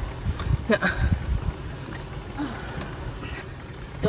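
Golf cart rolling along a paved street, with a low uneven rumble of the tyres and wind on the microphone, plus a few light knocks in the first second.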